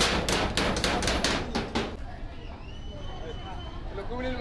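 Hammer blows on metal, quick and even at about four to five strikes a second, stopping about two seconds in.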